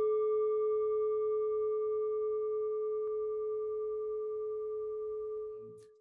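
A single struck bell tone ringing on, a steady low note with fainter higher overtones, slowly dying away and fading out near the end.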